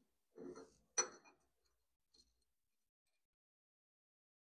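Screws and metal fittings on a saw-blade grinder's blade carrier handled by hand, giving a few light metal clicks and clinks: a short scrape, a sharp click about a second in, then a faint tick.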